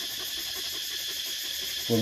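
Steady high-pitched background drone of insects, with a fine, fast pulsing in it. A voice comes in right at the end.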